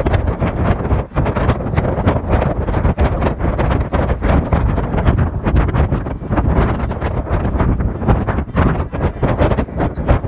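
Wind buffeting the microphone in a moving open car, with a low, steady rumble of road and engine noise underneath.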